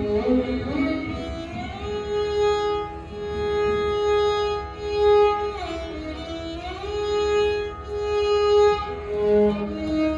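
A small ensemble of Carnatic violins playing the melody of a kriti in raga Amruta Varshini in unison, holding notes and sliding between them with gamakas, including a slow dip and rise in pitch about six seconds in. A hand drum plays underneath.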